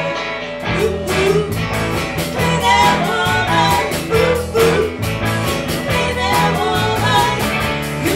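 Live rock band playing: electric guitars and a drum kit keeping a steady beat, with a singer's voice over them.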